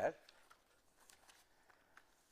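A man's spoken word trailing off at the start, then a pause of quiet room tone with a few faint ticks.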